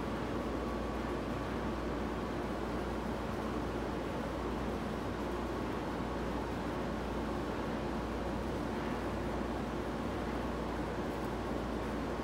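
Steady, unchanging mechanical background noise, an even hum and hiss like a running fan or air unit, with no distinct events.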